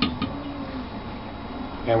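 A blender jar knocking against the rim of an aluminium stockpot: one sharp knock and a lighter one just after, as the last of the ground chili is emptied into the stock. A low, steady background hiss follows.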